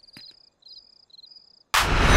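Crickets chirping faintly in short, repeated high trills. Near the end a sudden loud rush of noise cuts in.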